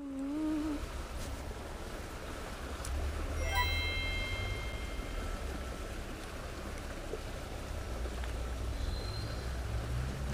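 Steady rush of creek water with a low rumble on the microphone. A held high tone sounds for about two seconds, starting about three and a half seconds in.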